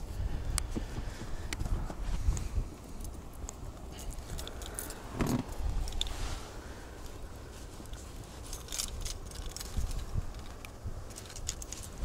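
Scattered light clicks and metallic rattles of fishing gear and a phone being handled, over a low rumble of wind on the microphone.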